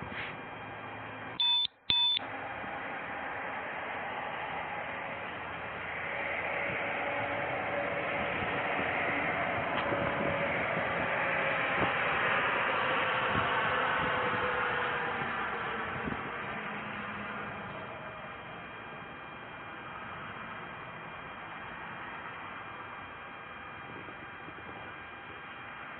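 A body-worn police camera's double beep: two short electronic tones about a second and a half in, half a second apart. A broad rushing noise then swells from about six seconds in and fades away over the next dozen seconds.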